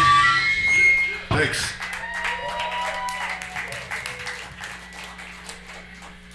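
A live band's final chord and cymbals ring out and are cut off by a thump about a second and a half in. A small crowd then claps and cheers over a steady amplifier hum.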